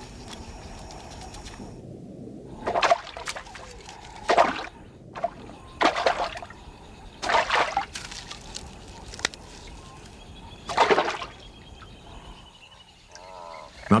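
Fish splashing in shallow floodwater: five or six separate splashes, about a second and a half apart.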